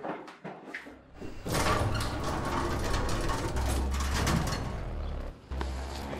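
A few faint clicks, then, about a second and a half in, a dense wall of distorted synth noise with heavy deep bass starts up and holds, stepping in pitch: the opening of a dark, industrial-style hip-hop beat.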